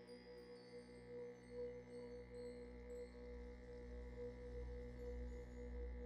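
Faint ambient meditation music: long held, ringing tones with no beat, joined by a low drone that swells in about two seconds in.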